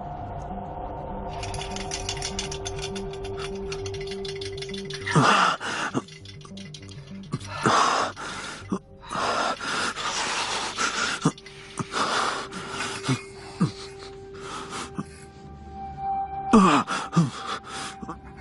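A man's loud gasps and groans, falling in pitch, come one after another every second or two from about five seconds in. They sit over a droning horror-film score, which has a pulsing low beat in the first few seconds.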